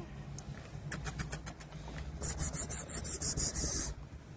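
Quick scratchy rubbing close to the microphone, scattered at first and then a fast run of strokes for most of the second half, over the steady low hum of a car's cabin.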